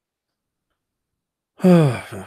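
Dead silence, then about one and a half seconds in a man lets out a voiced sigh that falls in pitch and trails off into breath.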